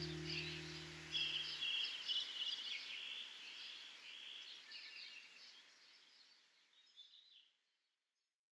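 A sustained music chord dies away over the first second or two. Over it come birds chirping in short repeated calls, which fade out gradually and are gone by about six seconds in.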